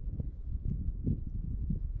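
Wind buffeting the camera's microphone: an uneven low rumble with faint, irregular short knocks.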